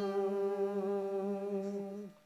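Singing held on one long, steady note, closing a phrase of a traditional Ladakhi wedding song; the note stops at the very end.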